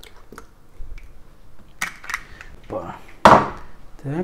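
Eggs being cracked into a mixing bowl: a few sharp taps of shell and handling clatter of shells and dishes, the loudest a single knock a little past three seconds in.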